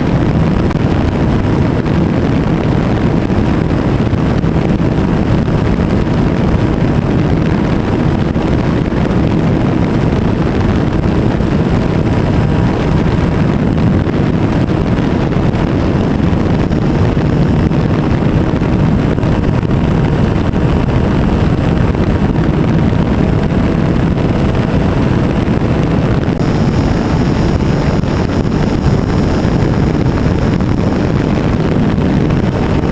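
Single-cylinder model airplane engine running steadily in flight, heard from a camera mounted right behind it, with wind rushing over the microphone. A faint high steady tone joins in near the end.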